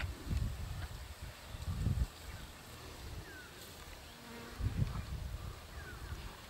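Flies buzzing around a freshly opened buffalo carcass, with two short low thumps, one about two seconds in and one near the end.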